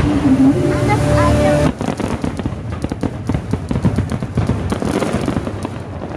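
Fireworks crackling: a dense run of rapid small pops that starts suddenly about two seconds in, from gold cascading shells.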